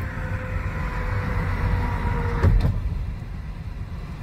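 Road and engine noise heard inside a moving car's cabin, a steady low rumble. A faint steady whine stops with a thump about two and a half seconds in.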